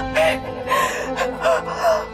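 A woman sobbing in distress, with short gasping cries about every half second, over background music with sustained tones.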